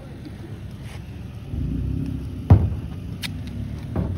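Low rumble of a motor vehicle running nearby, growing louder about one and a half seconds in. A single sharp knock about halfway through is the loudest sound.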